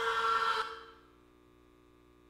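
A young man's loud, held scream of pain from a crushed hand, one steady pitch that cuts off abruptly under a second in. A faint steady electrical hum follows.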